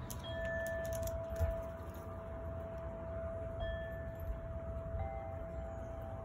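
Chimes ringing: a few clear metallic notes sound one after another, each held for seconds, the lowest note ringing on throughout, over a faint low rumble.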